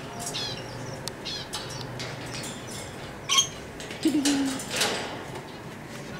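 Caged Alexandrine parakeets giving scattered short, high chirps and squeaks, with a few sharp clicks between them.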